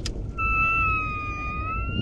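A person imitating an elk call at elk: one long, high, whistle-like note that starts about half a second in and holds nearly level, dipping slightly and then rising a little.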